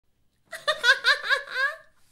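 A woman laughing: a quick, high-pitched run of laughs that starts about half a second in and fades out near the end.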